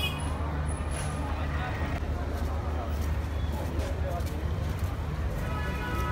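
Steady low rumble of street traffic under scattered faint voices, with a clearer voice coming in near the end.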